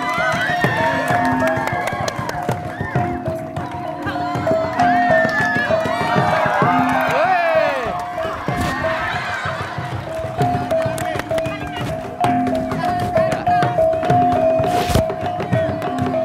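Traditional music with drums, a short figure of held tones repeating about once a second, with voices and shouts from the onlookers over it.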